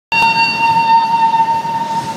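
A steady high-pitched tone, like a whistle or horn, held throughout, its upper overtones fading after about a second and a half. Beneath it is the low rumble of hot-air balloon propane burners firing.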